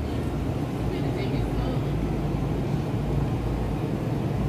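Steady low hum and rumble of background noise, with faint voices about a second in.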